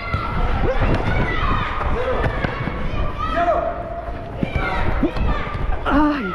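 Players shouting across an echoing indoor football hall, with thuds of a football being kicked and played on artificial turf. A louder knock comes at the very end.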